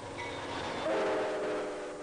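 Train going by with its rushing noise, and from about a second in its air horn sounding a steady chord of several notes.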